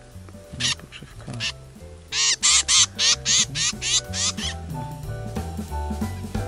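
Harsh, repeated bird calls: two single calls, then a loud run of about eight in quick succession, roughly three a second, over background music.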